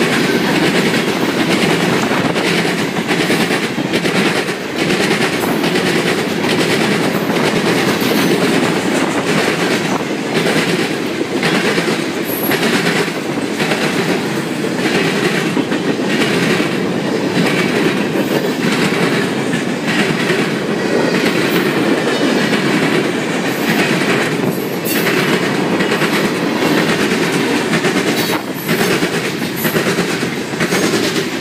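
Freight train cars rolling past close by: a continuous rumble of steel wheels on rail, with a steady run of clicks as the wheels cross rail joints.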